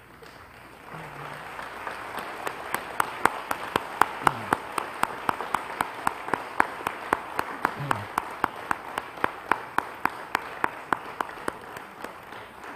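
A congregation applauding, building up over the first couple of seconds, with one nearby person's sharp claps standing out at a steady beat of about three a second.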